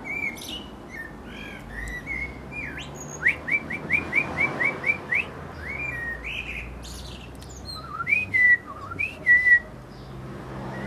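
A Eurasian blackbird's fluty song and a person's whistling trade phrases. In the middle comes a run of about eight quick rising whistles, and some phrases end in high, thin twittering.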